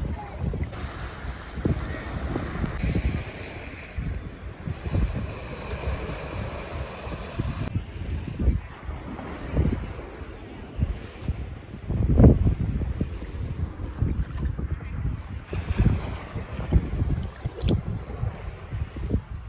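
Wind buffeting the microphone over small sea waves sloshing close by, with the mic held just above the water surface; the loudest gust comes about twelve seconds in.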